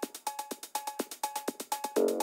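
Opening of an electronic dance track: a drum-machine pattern of fast, even high ticks with a short, repeating pitched blip, and no bass.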